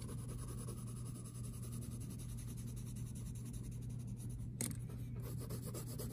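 Colored pencil shading back and forth on graph paper, a steady run of quick scratching strokes, with one louder stroke about two-thirds of the way through.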